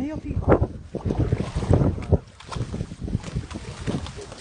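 Wind buffeting the microphone in irregular gusts, with uneven low knocks underneath.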